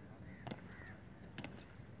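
Crows cawing faintly, with two sharp knocks about a second apart.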